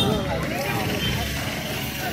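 Outdoor street ambience: faint voices of people nearby over a steady low rumble of passing traffic.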